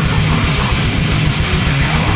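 Grindcore band playing live, with heavily distorted guitars over fast, relentless drumming and rapid low drum pulses. It is a raw bootleg tape recording.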